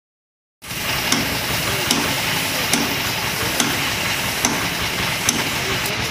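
HVLP gravity-feed spray gun hissing steadily as it sprays paint onto a car bumper, starting about half a second in. A sharp click repeats at an even pace, a little more than once a second.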